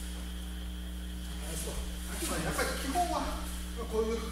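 Steady low electrical hum of the room, with a voice speaking indistinctly for about two seconds in the second half.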